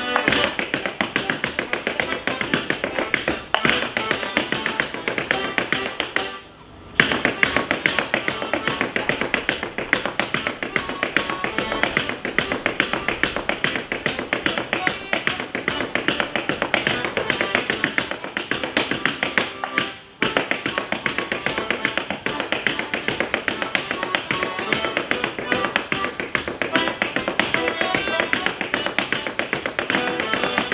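Wooden-soled clogs beating out a fast clog-dance hornpipe on a stage floor, a dense stream of taps over an accordion playing the tune. The sound breaks off briefly about six seconds in and again just before twenty seconds.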